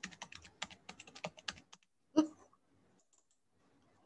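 Computer keyboard typing: a quick, irregular run of key clicks for about two seconds, then one louder click a little after two seconds in.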